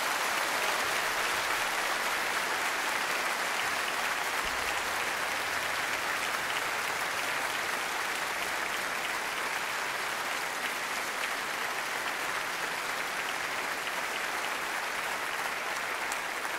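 Large audience applauding steadily, easing off slightly toward the end.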